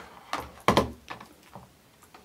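Hard objects handled and set down on a wooden tabletop: two sharp knocks about a third and two-thirds of a second in, then a few fainter taps.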